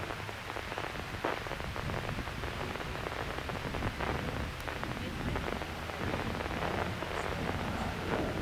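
Curtiss P-40 fighter's V12 piston engine heard from the ground as a steady, crackling, rushing drone while the aircraft flies overhead.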